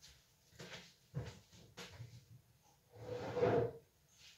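A cupboard and glass jars being handled: a few light knocks and clunks, then a longer, louder clatter about three seconds in.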